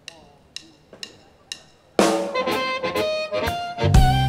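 Four sharp clicks about half a second apart count the band in. About two seconds in, the blues band starts loud, with an amplified diatonic blues harmonica playing held notes over drums and guitar. A heavy bass and full low end come in near the end.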